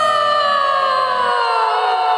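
A woman singing one long final note into a microphone over a karaoke backing track, her pitch sliding slowly down. The backing music stops about a second and a half in, leaving the sung note alone.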